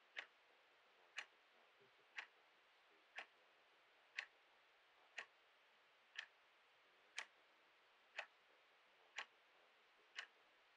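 A clock ticking steadily, one sharp tick every second.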